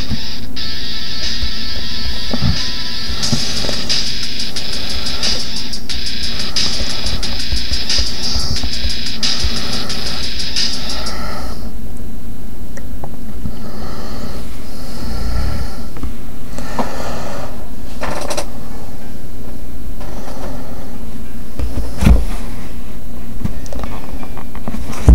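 Loud, distorted music from a television broadcast, with a sharp knock near the end.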